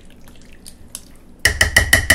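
Quiet stirring of thick chili cheese sauce in a slow cooker, then, about a second and a half in, a spoon rapped quickly against the rim of the crock pot, about six ringing taps a second, to knock the sauce off it.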